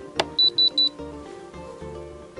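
A Spektrum DX6i radio transmitter switched with a click, then three short, high, evenly spaced beeps from the transmitter, over background music.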